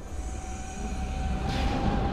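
Film sound effect: a low rumble starts suddenly and builds, with a steady high tone held through it and a rushing swell joining near the end.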